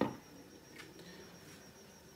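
A glass pan lid set down onto a metal sauté pan: one sharp clack right at the start and a lighter click just under a second in, then only a faint hiss from the covered pan.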